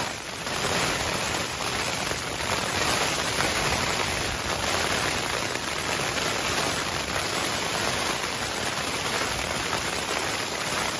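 Steady rain pelting the thin fabric of a trekking-pole tent, heard from inside the tent.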